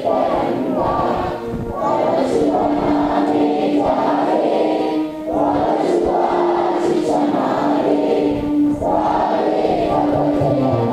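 A large group of voices singing an anthem together in unison, in slow phrases with long held notes.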